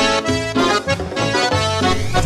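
Live band playing loud Latin dance music, a melody instrument over a moving bass line and steady beat.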